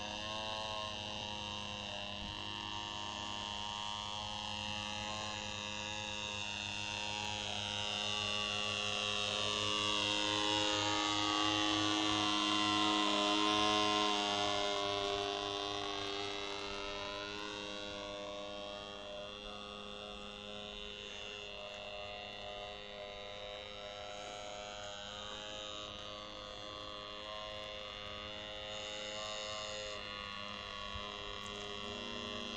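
Model aeroplane's motor and propeller droning steadily in flight on an undersized propeller, growing louder and shifting in pitch as it passes closest about twelve to fourteen seconds in, then fading again.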